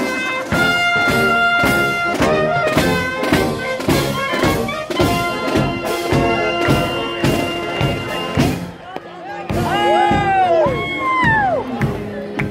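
Brass band music over a steady drum beat, about three beats a second. It stops about eight and a half seconds in. Then come a few sliding calls that rise and fall in pitch.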